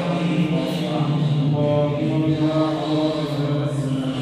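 A man's voice chanting a prayer of supplication in long, drawn-out melodic notes.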